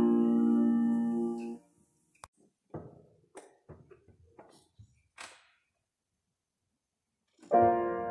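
Final piano chord of a hymn, held and fading, then cut off about a second and a half in; faint knocks and handling noises follow, then a few seconds of silence. Near the end the next piece begins with a struck, ringing chord.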